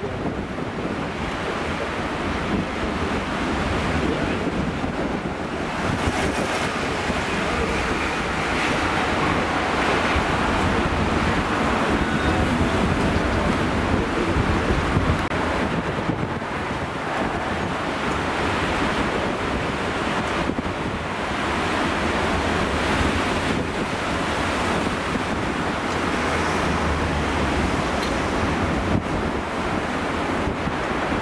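Heavy storm surf breaking over rocks and against a harbour breakwater, a continuous rush of waves at an even loudness. Strong gale-force wind buffets the microphone, adding a low rumble.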